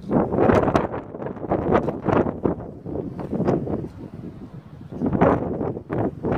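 Wind buffeting the phone's microphone in uneven gusts.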